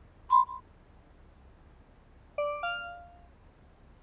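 Smartphone text-messaging sound effects: a short high ping about a third of a second in as a message is sent, then a two-note rising chime a couple of seconds later as a reply arrives, ringing briefly before fading.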